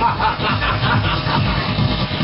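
Live electronic house music played on synthesizers and drum machines. A fast figure of short, pitch-bending notes repeats several times a second over a steady bass beat.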